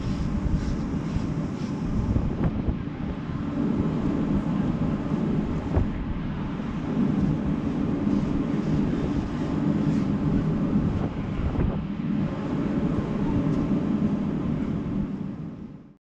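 Wind buffeting the microphone, an uneven low rumble, over a steady low hum. The sound fades out at the very end.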